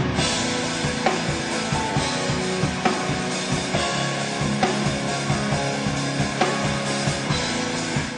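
Rock music: a drum kit playing over held instrument notes, with regularly spaced hits.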